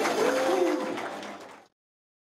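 The tail of a live pop song performance: low held notes with a voice sliding through crooning notes above them, fading down over about a second and cutting off to silence about one and a half seconds in.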